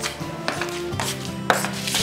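Background music of low sustained notes, with sharp taps about twice a second that match a woman's sandalled footsteps on a hard tiled floor.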